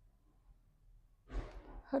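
A woman's short, breathy rush of breath about a second and a half in, part of a slow yoga breathing exercise, followed right away by the first syllable of a spoken cue.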